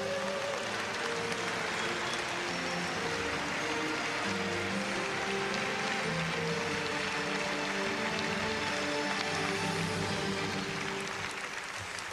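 Audience applauding, a dense steady clatter of many hands, over music with long held notes that change every second or so. The applause thins out near the end.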